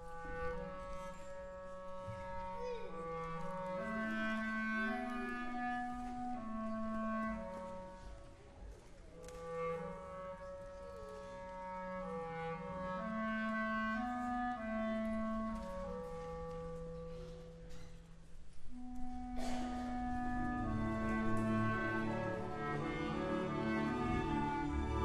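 Live orchestral music: a clarinet plays a slow melody low in its range, in two matching phrases, with a higher instrumental line above it. About 19 seconds in, more of the orchestra joins with a fuller, sustained sound.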